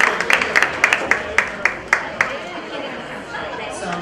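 Audience applause thinning to a few steady claps, about four a second, that stop about two seconds in, over crowd chatter.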